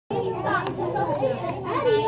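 Children chattering in a classroom, many voices talking over one another at once.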